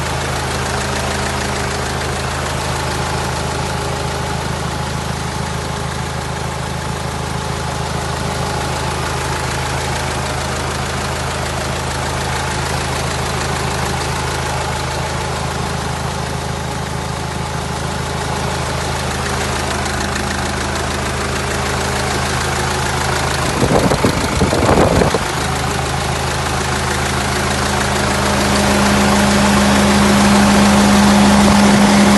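Hyundai Terracan 2.9 CRDi four-cylinder common-rail diesel idling steadily, heard with the bonnet open. A brief burst of noise comes about four-fifths of the way through. Near the end it grows louder as the belt and pulleys at the front of the engine come closer.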